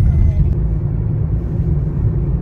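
Car driving, with a loud, steady low rumble of road and engine noise heard from inside the cabin.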